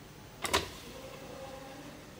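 Model sliding door opening under a small DC motor driven through an L293D motor-driver chip: a sharp clack about half a second in as it starts, then a faint steady whir for about a second as the panel slides open.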